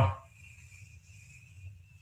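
Chalk drawing a curve on a blackboard, giving a faint, thin, high squeak held for about two seconds.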